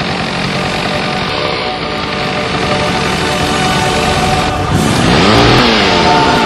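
Chainsaw engine running, then revving with its pitch swooping up and down in the last second or so, over loud music.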